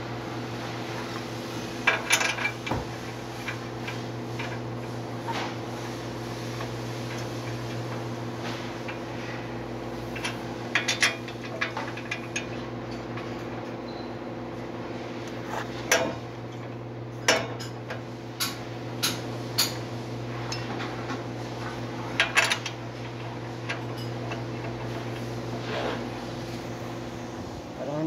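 Scattered sharp metallic clinks and taps of brake parts and hand tools being handled as a brake caliper is worked on, over a steady low hum.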